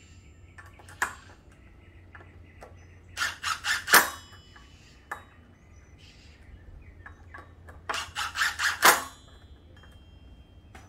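Cordless drill with a 4 mm hex bit running down the allen bolts on a brake rotor in a cross pattern. Two quick runs of rapid metallic clicking, a few seconds in and near the end, with single clicks between them.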